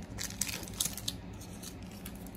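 Plastic trading-card pack wrapper crinkling and tearing as it is opened by hand, a run of short crisp crackles that thin out in the second half.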